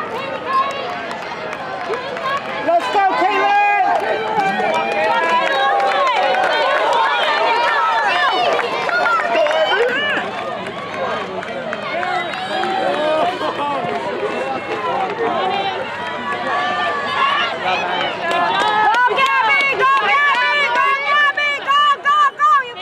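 Crowd of spectators shouting and cheering for runners, many voices overlapping at once, growing louder in the last few seconds.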